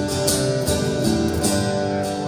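Acoustic guitar strumming chords in a steady rhythm.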